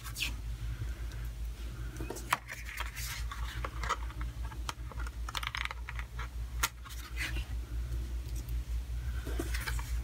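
Metal tweezers clicking and tapping against cardstock as stamping masks are peeled off, with short rustles of paper as the card is handled. A steady low hum runs underneath.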